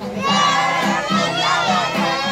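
A group of children shouting and cheering together, many voices at once, over music playing in the background.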